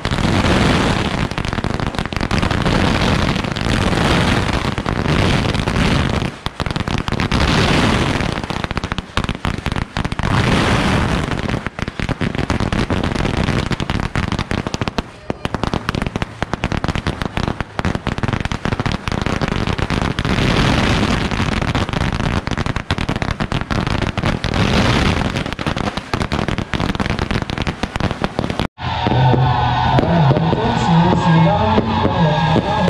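Strings of firecrackers going off on the ground in a continuous, rapid crackle of bangs that swells and eases in waves. The barrage cuts off abruptly near the end.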